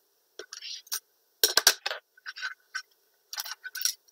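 Hands handling and bending a taped floral-wire frame: short spells of crinkling tape and paper and small clicks, with pauses between them. A louder clatter comes about a second and a half in.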